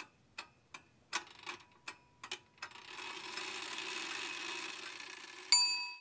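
Sparse sound-design tail of an electronic track: about eight sharp, faint ticks with a slight metallic ring, roughly every 0.4 s. A soft hiss follows for a few seconds, then a sudden bright ding that is cut off abruptly at the end.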